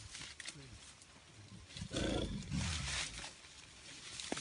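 A silverback mountain gorilla gives a low, rough vocalization about a second long near the middle, with faint voices around it.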